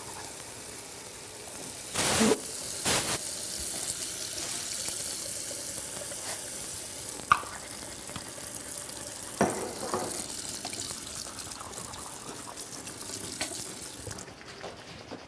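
Water running from a tap into a bathroom sink, a steady hiss with two louder splashy bursts about two and three seconds in, cut off near the end.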